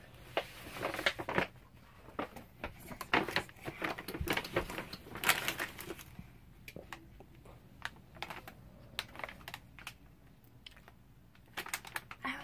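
Tissue paper and a plastic candy bag rustling and crinkling as they are pulled by hand from a gift bag: irregular crackles, busiest in the first six seconds, then sparser.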